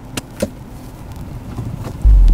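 A Ford car's handbrake lever being worked in the cabin: two short clicks, about a quarter and half a second in, over a faint low hum.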